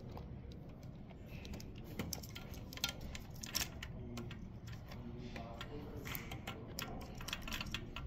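Faint, irregular small clicks and rustles of insulated wires and faston spade connectors being handled as they are reconnected to an espresso machine's main on-off switch.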